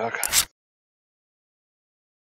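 The last of a spoken word, cut off about half a second in by a brief, loud burst of noise, then dead silence.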